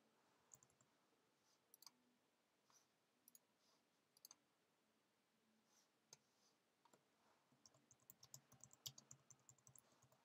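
Faint computer keyboard typing: scattered single clicks at first, then a quick run of keystrokes from about seven and a half seconds in.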